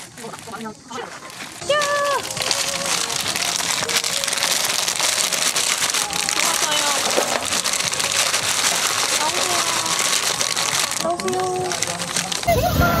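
Lump charcoal being poured out of its bag into a metal fire box: a steady rattling and crinkling of charcoal pieces and bag. It starts suddenly about two seconds in and runs on until near the end.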